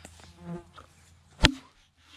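A single axe blow bites into a fallen log about one and a half seconds in: a sharp chop with a short ring, one of a steady chopping rhythm of blows about two seconds apart. Earlier, a flying insect buzzes briefly close by.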